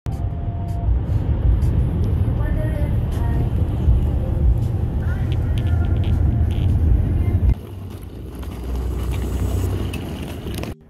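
Steady road and engine rumble inside a moving car's cabin, with faint voices over it. Partway through the rumble drops abruptly to a lower level.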